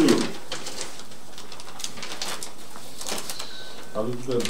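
Paper rustling and crinkling in short, scattered crackles as a ballot envelope is handled and a paper is drawn out of it, with a brief murmur of a voice at the very start.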